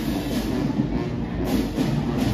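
High school marching band playing: brass holding chords over drums.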